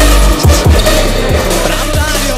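Electronic music with a heavy bass line and a steady kick-drum beat.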